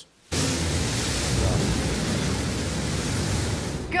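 Blue Origin New Shepard rocket climbing after launch: the steady rushing noise of its single BE-3 engine, cutting in abruptly about a third of a second in.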